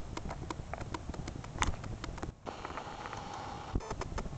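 Golden retriever eating dry kibble from a stainless steel bowl: irregular crunches and clicks of kibble against the metal, with a brief pause about halfway through.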